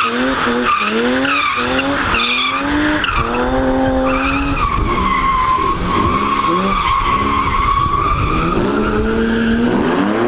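BMW E36 M3's S50B30 straight-six engine revving up and down repeatedly while the car drifts, tyres squealing. Through the middle the revs hold steadier during a long sustained slide with a steady tyre squeal, then climb again near the end.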